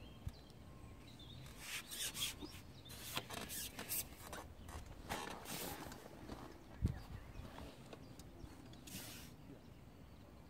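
Handling noise from a fishing pole being worked while a hooked fish is played: irregular rubbing and rustling, with one sharp thump about seven seconds in.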